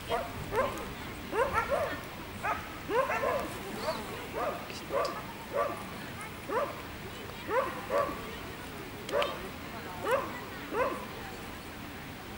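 A dog barking over and over in short, high yips, about one or two a second, each falling in pitch; the barking stops about a second before the end.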